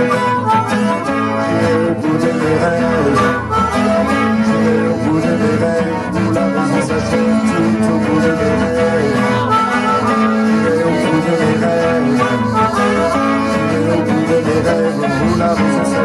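Instrumental break of a song: acoustic guitar strumming chords under a diatonic harmonica playing sustained, bending melody notes.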